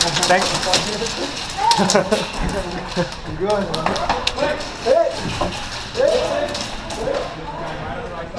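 Players shouting to each other, with many sharp clicks and knocks scattered among the shouts, densest in the first few seconds.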